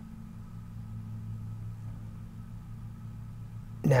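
A steady low hum with no other event: background hum between spoken passages.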